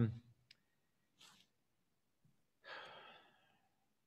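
Mostly quiet room tone: a small click about half a second in, then a soft breathy exhale, like a sigh, near three seconds in.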